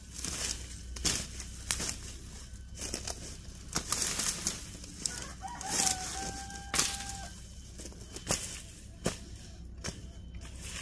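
Hand sickle chopping and hacking through dry brush and stalks, giving irregular sharp cuts and crackling. About halfway through, a rooster crows once, a single held call lasting nearly two seconds.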